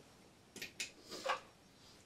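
Faint handling noises from an electric guitar being picked up and moved: a few short, soft clicks and scrapes in the first half, with no notes played.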